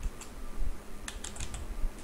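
Computer keyboard keystrokes: a few separate key presses, one near the start and a quick cluster in the second half.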